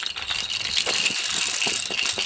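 Small wooden push-along toys on sticks clattering and rattling steadily as children run them across a paved stone floor.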